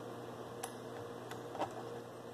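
A few faint, light clicks of a small wrench being fitted to the threaded stud of a rifle-stock mount.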